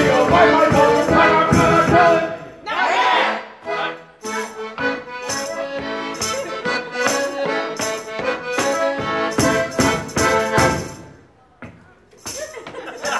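Live song music with a steady strummed or struck rhythm under pitched notes, a held gliding note about three seconds in, and the music dying away about a second before the end.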